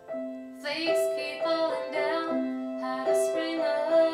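Upright piano playing a slow song, with a woman's voice coming in singing over it about half a second in.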